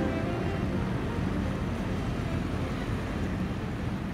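A motor cruiser under way: a steady low engine rumble with rushing water and wind noise on the microphone.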